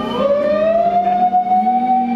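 A woman's singing voice slides up into one long, steady held note through a microphone, over backing music.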